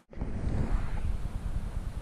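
Wind buffeting the microphone: a steady low rumble with a fainter hiss above it, starting suddenly after a brief dropout.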